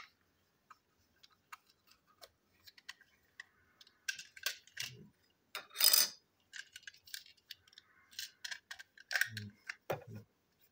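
Small plastic toy train parts being handled and taken apart: scattered light clicks and taps, with a louder plastic clatter about six seconds in and a dull knock near the end.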